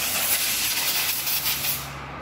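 Handling noise: a steady, rustling hiss of fingers rubbing over a phone's microphone while a hand covers the phone. The hiss eases off near the end.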